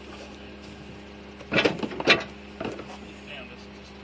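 A steady low engine hum runs under two loud clattering knocks about a second and a half and two seconds in, then a few lighter knocks, as trash is handled at a dirty metal container.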